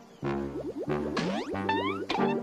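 Cartoon soundtrack music: held low pitched notes with a run of quick rising pitch slides laid over them, comic sound-effect style.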